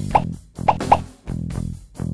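Three short cartoon plop sound effects, for eggs dropping into a mouth, over background music with a plucked bass guitar line.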